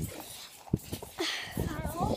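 Faint voices in the background, with a single short knock about three quarters of a second in.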